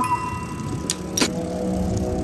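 Low steady rumble of road and wind noise while moving along the road, with a sharp click a little over a second in. Background music fades out at the start and a new piece comes in near the end.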